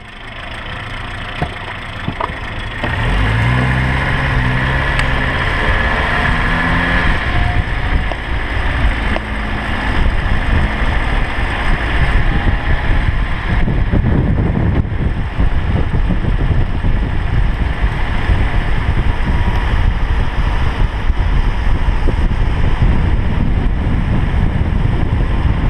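Car engine pulling away and accelerating, its pitch climbing over a few seconds, then heavy wind buffeting on a microphone mounted outside the car, with road rumble, as the car runs at speed.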